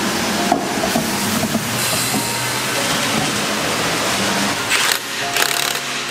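Short bursts from an impact wrench running lug nuts onto a car wheel, near the end, over background music and a steady hiss.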